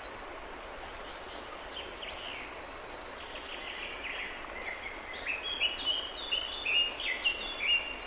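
Birds chirping over a steady background hiss. The chirps are short and fall in pitch, and they come faster and louder over the last three seconds.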